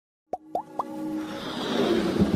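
Animated-logo intro sound effects: after a brief silence, three quick rising pops, each a little higher than the last, then a swelling whoosh that grows louder into electronic music.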